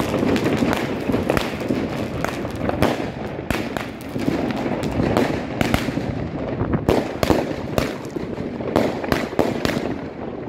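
New Year's Eve fireworks and firecrackers going off all around: a dense, irregular barrage of bangs and crackles, some much louder than others, without a break.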